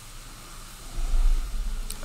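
Steady hiss of recording noise. About halfway through a low rumble comes in, and a single short click sounds just before the end.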